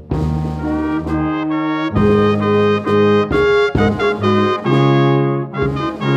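Brass chamber quintet of trumpets, French horn, trombone and tuba playing held chords that move from one to the next every second or so.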